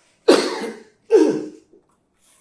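A man coughing twice, two loud hacking coughs a little under a second apart.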